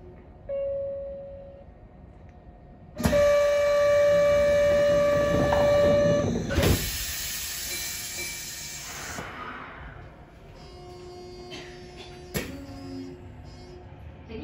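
Kyoto subway 20 series train setting off from a station after its doors close. A short tone sounds about half a second in. About three seconds in comes the loudest event, a steady whistling hiss of compressed air lasting about three seconds, then a fainter hiss trailing off into the quieter running hum of the train.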